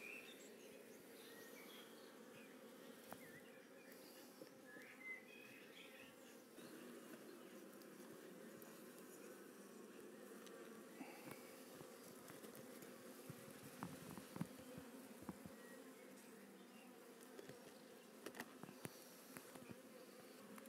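Faint, steady hum of a honey bee colony buzzing over an open hive, with a few light knocks from wooden hive frames being handled.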